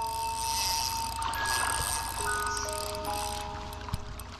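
Background music: a few long held notes that change pitch every second or so, over a low steady rumble.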